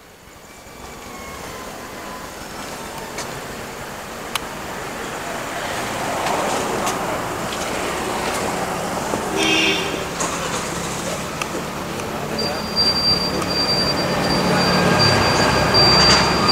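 Outdoor road traffic noise with indistinct voices, growing steadily louder. A faint, steady high-pitched tone comes in about three-quarters of the way through.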